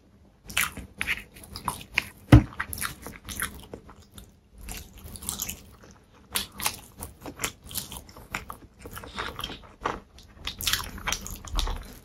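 Close-miked mouth sounds of a person eating: crisp crunching bites and wet chewing clicks, with one loud sharp snap about two and a half seconds in. Midway he eats a slice of boiled sausage, and near the end he bites into a piece of flaky pastry.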